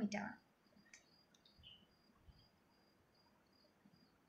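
A woman's voice finishing a word, then a pause of near quiet: faint room tone with a few soft clicks and a faint, broken high-pitched tone.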